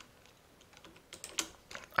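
Computer keyboard keys clicking in a short, quick run in the second half, one click louder than the rest, as hotkeys are pressed while working in CAD software.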